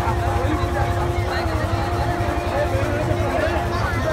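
Crowd of people talking over a steady low rumble, with a steady mid-pitched tone held through most of it that stops shortly before the end.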